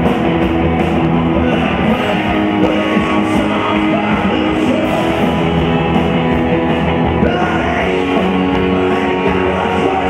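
Rock band playing live: electric guitars over drums, loud and steady.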